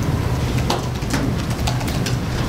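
Laptop keyboard typing: scattered individual keystroke clicks over a steady low hum.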